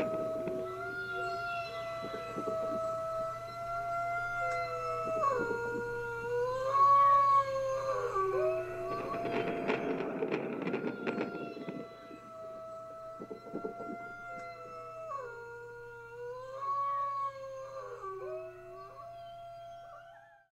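Wolves howling in chorus: long overlapping howls that hold a pitch, then dip and rise again. The howling grows quieter after about twelve seconds.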